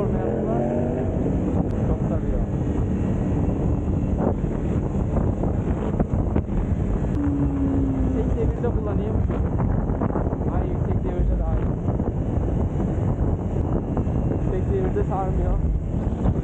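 Wind buffeting the microphone over a motorcycle engine running at road speed during a ride in the rain, a steady rushing noise with no break.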